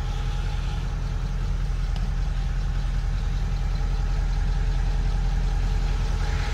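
The 5.0-litre Cummins V8 turbodiesel of a 2016 Nissan Titan XD idling steadily, heard from inside the cab.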